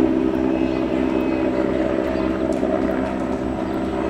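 A steady engine drone, holding several fixed pitches without rising or falling.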